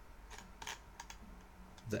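A handful of soft, scattered clicks from a computer's mouse and keyboard, over a faint low hum.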